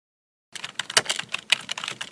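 Computer keyboard typing sound effect: a quick, irregular run of key clicks that starts about half a second in.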